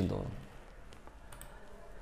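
A few faint computer clicks about a second in, as the next bullet point of a presentation slide is brought up.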